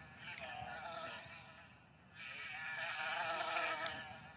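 A housefly buzzing, its pitch wavering as it moves about: a fainter stretch in the first second and a half, then a louder one from about two seconds in. A short sharp click comes just before the end.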